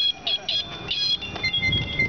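Bicycle bells ringing among a group of riders: several quick high strikes in the first second, then longer ringing tones overlapping through the second half.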